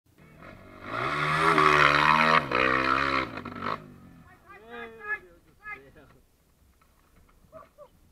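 Off-road dirt bike engine revving hard for about three seconds, then dropping away, followed by people's voices shouting briefly.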